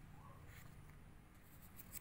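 Near silence with faint rustling of paper book pages being handled, a few soft crackles in the second half.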